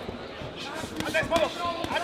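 Boxing bout: voices shouting from ringside, with several sharp thuds from the boxers' gloves and footwork on the ring canvas.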